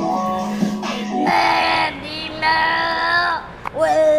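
Music playing, then from a little over a second in a high voice sings two long held notes.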